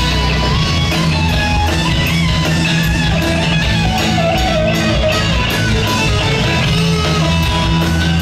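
Live rock band playing an instrumental passage: electric guitars, bass and drums, loud and steady, with lead lines sliding in pitch over a regular cymbal beat.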